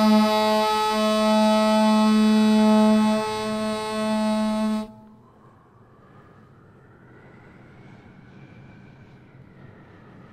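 Replica of the Louvre aulos, the ancient Greek double reed pipe, playing a low held note on one pipe under a melody on the other. The playing stops abruptly about five seconds in, leaving only faint background noise.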